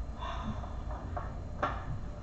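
A few short knocks, three within about a second, the last the loudest, over a low steady hum.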